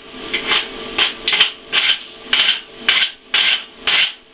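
Weld slag being cleaned off the 7018 cover-pass bead of a steel test plate with a hand tool: quick sharp strokes against the metal, roughly two or three a second, over a faint steady hum.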